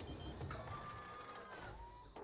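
Sound effects from an animated cartoon soundtrack: a low mechanical rumble under a steady, slightly falling whine in the middle, and a short rising tone near the end.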